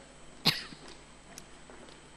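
A single short cough close to the microphone about half a second in, then faint room noise with a few soft clicks.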